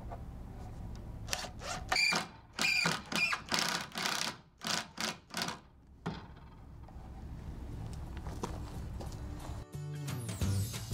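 Cordless impact driver driving a long wood screw through a 2x4 into the frame, in a run of short bursts of rapid hammering with a high whine between about one and six seconds in.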